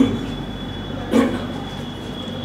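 A pause in a man's speech through a hand-held microphone, filled by a steady low hum and a faint, thin high whine. A single short syllable from him comes about a second in.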